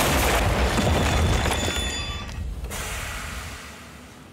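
A loud crash as a house wall bursts open, then a heavy rumble of breaking debris that dies away over about three seconds.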